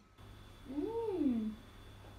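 A voice making one drawn-out 'mmm' of enjoyment while tasting food, rising and then falling in pitch, about half a second in.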